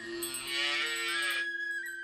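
A calf moos once, one long call of about a second and a half that drops in pitch at the end, over a held note of background music.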